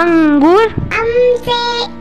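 A child's voice singing a line of a Hindi alphabet song: a few held syllables whose pitch slides up and down, over faint backing music.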